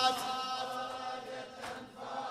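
Congregation of male mourners chanting the refrain "Abbas" in unison as a long held note that fades away.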